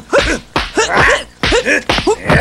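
Film kung fu fight: a rapid string of short shouted grunts from the fighters, each rising then falling in pitch, mixed with sharp punch and block impact sounds.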